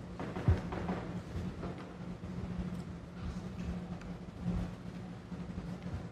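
A steady low hum with irregular dull thuds; the loudest thud comes about half a second in.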